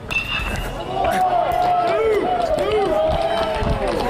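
A baseball bat hits the ball right at the start with a short ringing ping, then players and spectators shout and cheer as the batter runs.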